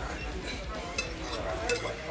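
Metal forks scraping and clicking against plates while two people eat, with a few sharp clinks, over faint background voices.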